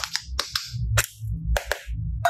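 Hard plastic toy mould handled and pried apart by hand: about five sharp plastic clicks and snaps over two seconds, with a low rumble of handling beneath.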